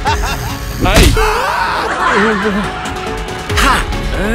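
Slapstick sound effects over background music: a sharp slap-like hit about a second in, the loudest moment, with quick sliding, wobbling tones around it.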